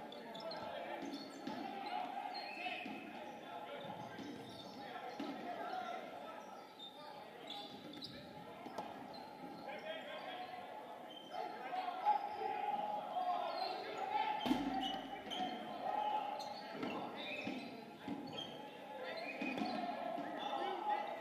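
Indistinct chatter and calls of many players echoing in a large gymnasium, with scattered thuds of dodgeballs bouncing on the hardwood floor; one sharp smack a little past two-thirds of the way through is the loudest sound.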